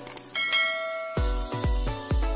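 Click sound effect followed by a bell chime sound effect that rings out and fades, as the animated notification bell is clicked. About a second in, electronic music with a heavy bass beat comes in, about two beats a second.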